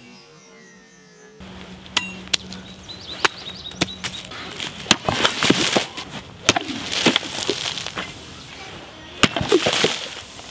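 A big hog splitter, a three-foot two-handed meat cleaver, hacking at targets: a run of sharp chopping impacts and clinks, with noisy splattering bursts in the middle and a cluster of hits near the end as a plastic soda bottle is chopped open.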